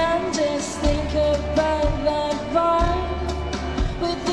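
A live band playing a slow country song: a female lead voice sings a held, gently gliding melody over acoustic guitar, a low bass line and light drums.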